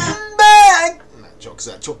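A man's voice sings one short, loud high note, held about half a second and sliding down at the end. It demonstrates the bright, sharp tenor tone under discussion, and a few soft spoken words follow.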